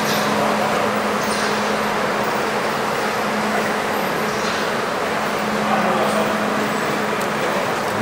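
Steady mechanical background noise with a constant low hum, unchanging throughout.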